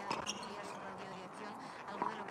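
A tennis ball bounced a few times on the hard court, faintly, with spectators talking.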